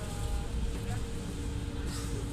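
Train running, heard from inside the carriage: a steady low rumble with a faint steady hum over it.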